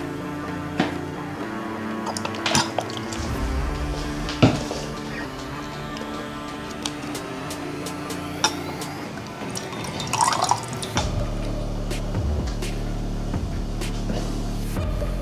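Background music with a steady beat, over a few sharp clinks of glass beakers being handled. About ten seconds in there is the splash of liquid being poured into a glass beaker.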